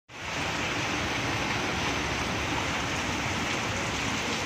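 Heavy rain pouring down in a steady, even hiss.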